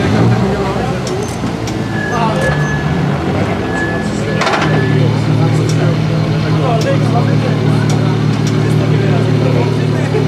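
Ford Fiesta rally car's engine running as the car rolls up onto the ramp, then settling into a steady idle about five seconds in.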